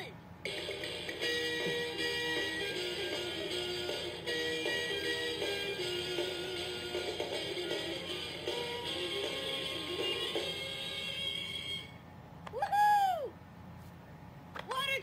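Bucky pirate ship toy playing a tinny electronic tune of short stepped notes through its small speaker, stopping about two seconds before the end. Just after it stops comes one short, loud cry that rises and then falls in pitch.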